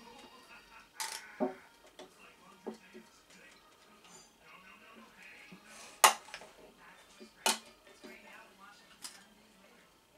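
A few sharp clicks and knocks from handling a metal can of acetone and working its cap open. The loudest comes about six seconds in.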